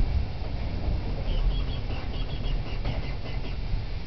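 Narrow-gauge steam locomotive starting a train on slippery rails, its driving wheels slipping, heard as a steady low rumble of exhaust and running gear. A few short high chirps come in the middle.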